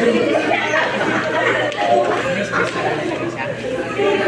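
Chatter of a group of people talking over one another, with no single voice standing out.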